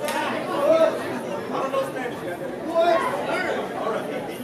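Several people talking over one another with no clear words: the chatter of a crowd and performers in a hall.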